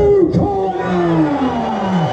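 Ring announcer's voice over the hall's loudspeakers, drawing out one long call whose pitch slides steadily downward, as the bout's winner is announced.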